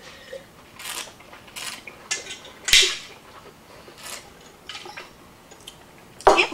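Wine being slurped and swished in the mouth while tasting: several short hissing sucks of air drawn through the wine, with one louder burst a little before the middle.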